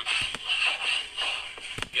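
A nasheed playing: layered male vocals, with a few sharp clicks early on and again near the end.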